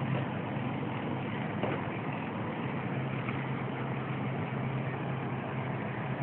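An engine running steadily, a constant low hum under an even wash of noise.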